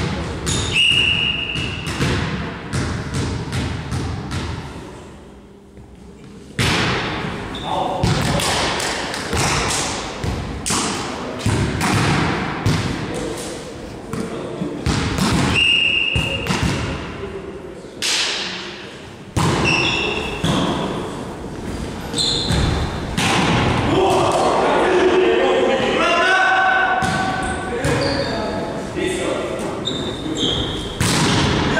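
Volleyball being played in a gymnasium: repeated thuds of the ball being struck and hitting the wooden floor, echoing in the hall, with players' voices calling out.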